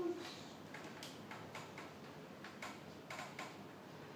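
Marker tip tapping and stroking on a small toy whiteboard: a faint series of short, irregular ticks as tally lines are drawn.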